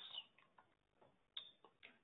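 Near silence in a pause in speech, with two or three faint short ticks in the second half.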